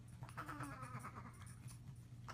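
Faint, short bleat-like vocal sounds from an infant, with light pats of a hand on her back.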